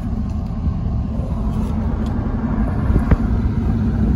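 Inside the cab of a 2022 Ford F-250 with the 7.3-litre gas V8, towing a heavy trailer at low speed: a steady low rumble of engine and road noise. A single short knock comes about three seconds in.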